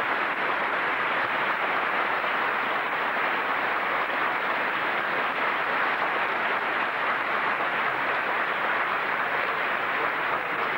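Steady, even hiss with nothing standing out from it: the noise floor of an old videotape soundtrack.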